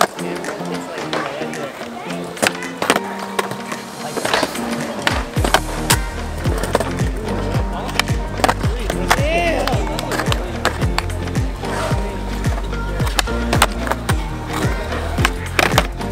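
Skateboard flatground tricks on smooth concrete: the tail pops, then the board clacks and the wheels land, over and over. All of it plays under background music, with a heavy bass beat coming in about five seconds in.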